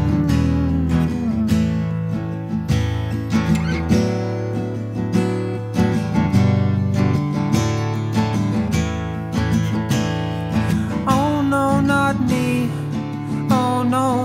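Acoustic guitar strummed steadily through an instrumental passage of a song, with a wavering melody line coming in about eleven seconds in.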